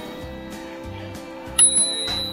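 A bicycle bell struck once about one and a half seconds in, a single bright ding that rings on, over background music with a steady beat.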